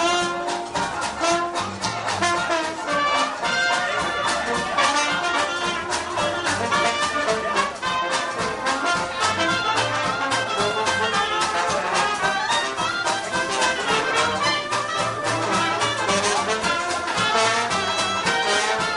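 Traditional New Orleans jazz band playing: clarinet, trumpet and trombone improvising together over upright bass, in a continuous full ensemble.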